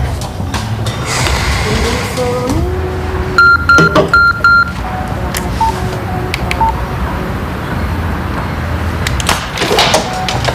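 Mobile phone alert tone: two pairs of short, high, loud beeps about three and a half seconds in, over soft background music.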